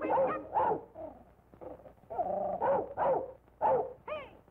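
Cartoon dog barking, voiced by a performer: a run of about six short, pitched barks and yelps, several falling in pitch.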